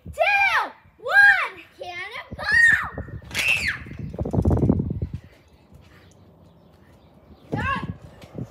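A child's high-pitched wordless whoops and squeals, several in a row, each rising and falling in pitch. About four seconds in comes a dull low thump with a short rush of sound as a girl drops from a height onto the trampoline bed, and there is one more short shout near the end.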